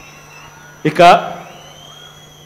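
A man's voice over a public-address microphone: a pause with a steady low electrical hum, then one short, loud spoken word about a second in. A faint, steady high-pitched tone follows it.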